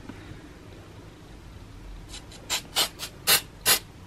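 Aerosol can of artificial snow spray let off in a quick series of short squirts, about half a dozen hisses starting about halfway in.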